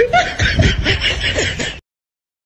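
Laughter in quick repeated pulses that cuts off suddenly near the end.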